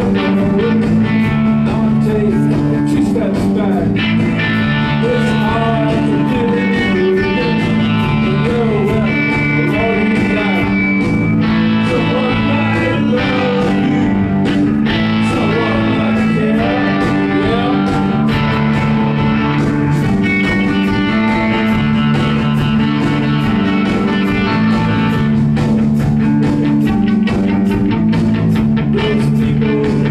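Live indie-rock band playing at full volume: electric guitar, electric bass and drums, with a man singing over them.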